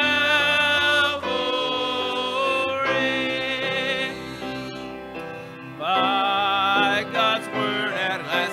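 Singing with instrumental accompaniment: notes held about a second each, with vibrato, dipping quieter for a moment around five seconds in.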